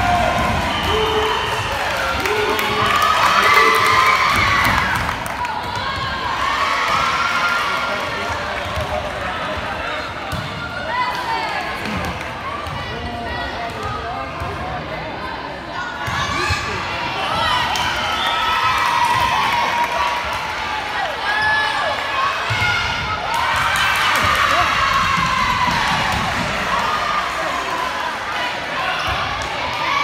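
A volleyball game heard in a gym: players and spectators call out and shout, loudest at two points, over repeated short thumps of the ball being hit and bounced.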